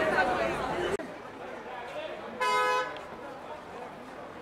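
Crowd chatter and shouting that cuts off about a second in, then a single short car horn toot over quieter voices.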